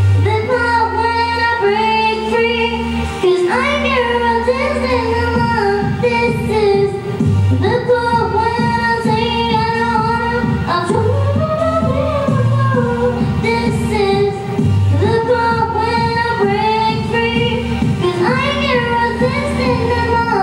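A young girl singing a song into a handheld microphone, her voice gliding and holding notes over instrumental accompaniment with steady, sustained bass notes.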